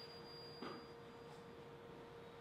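A faint, single high ringing tone dying away over the first second, the tail of something struck just before, over a steady low hum.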